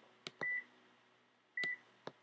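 Two short high electronic beeps about a second apart, each starting with a click, part of a steady, evenly spaced beeping.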